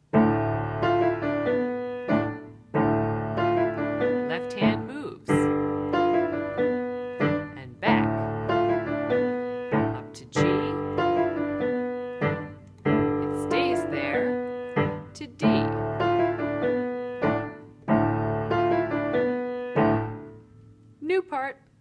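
Solo piano playing an elementary piece: phrases of about two seconds, each starting with a struck chord that fades, the left hand shifting one interval shape around to new positions under a repeating right-hand pattern.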